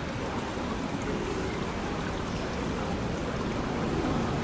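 Hess Swisstrolley 5 electric trolleybus approaching over cobblestones: an even rush of tyre and street noise with a faint electric hum, growing slowly louder as it nears.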